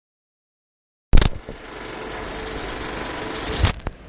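Silence, then about a second in a sudden loud bang followed by a steady mechanical noise that slowly grows louder, ending in another hit and cutting off abruptly just before the end.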